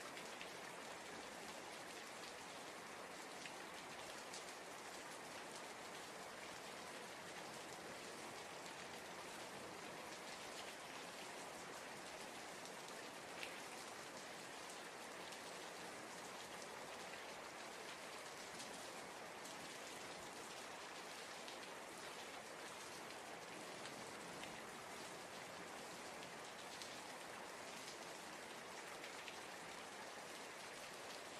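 Rain falling steadily: a soft, even hiss with faint scattered drop ticks and one slightly sharper tick about halfway through.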